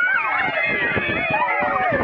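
A crowd of young children, many high voices calling and chattering over one another at once.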